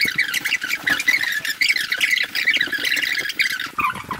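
Birds chirping: a dense run of many short, high calls in quick succession that starts and stops abruptly.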